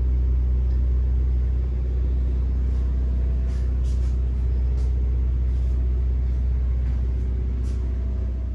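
Steady low drone of the trailer's onboard machinery running, a deep continuous hum, with a few faint ticks in the middle.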